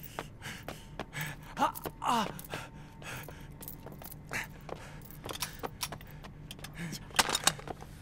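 Quick footsteps on concrete and stairs, with short gasping breaths from men running hard.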